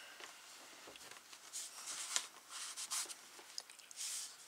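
Cloth rubbing over cardboard to wipe away excess glue that has spread past the glue strip: faint, irregular swishing strokes, clearest about halfway through.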